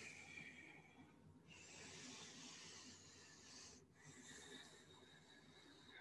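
Near silence, with faint soft breathing in two gentle swells.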